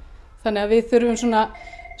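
A voice speaking for about a second, then a brief steady electronic beep near the end.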